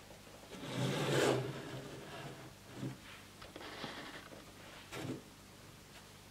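Hands handling a plastic Rainbow Loom and its rubber bands: a rustling scrape about a second in, then a few softer rubbing and scraping sounds.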